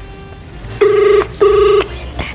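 Telephone ringback tone played through a smartphone's speaker: one double ring, two short warbling beeps close together about a second in. It means the called phone is ringing and has not yet been answered.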